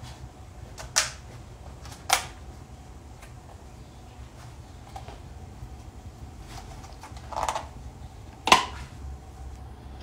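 Hands handling and opening a food package: a few short, sharp clicks and knocks, one about a second in and another a second later, a softer scuff around seven seconds, and the loudest click shortly after.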